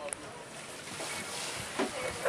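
Steady wind and sea noise on the camera microphone aboard a boat on open water, with brief faint voices near the end.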